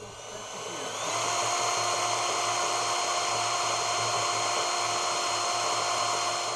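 Cordless drill boring a hole through the bottom of a plastic barrel: the motor whine rises in pitch over about the first second, then holds steady as the bit cuts through.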